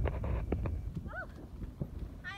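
Footsteps crunching on playground wood-chip mulch, a few sharp ticks over a low wind rumble on the microphone. A single short high-pitched vocal chirp comes about a second in.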